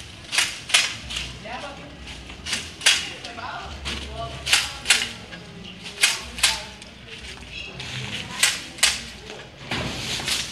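Homemade pole shears, garden shears mounted on a long pole and closed by a pull cord, cutting branches up in a tree: sharp snaps in pairs, about one pair every two seconds.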